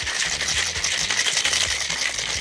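Ice cubes rattling hard inside a cocktail shaker being shaken vigorously, a fast, continuous clatter that keeps on through the whole shake.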